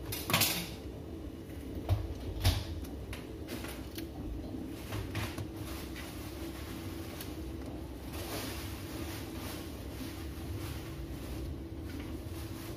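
Light kitchen handling sounds: a few sharp clicks and knocks of a knife and plastic colander, mostly in the first few seconds, over a steady low hum.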